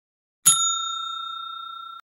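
Notification-bell ding from a subscribe-button animation: one bright strike about half a second in, ringing on in a clear steady tone that slowly fades and is cut off near the end.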